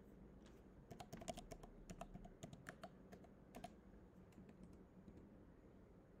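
Faint typing on a computer keyboard: a quick run of keystrokes in the first few seconds, then a few scattered ones.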